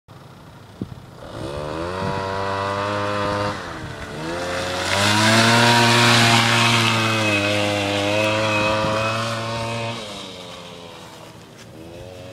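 Suzuki LT80 quad's small two-stroke single-cylinder engine revving as it comes toward the listener. It drops off the throttle briefly and revs again, loudest as it slides past close by, then fades as it rides away.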